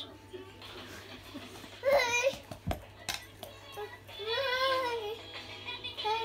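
A toddler singing and babbling into a toy microphone: a short high vocal call about two seconds in, a couple of knocks just after, then a longer sung note near the end.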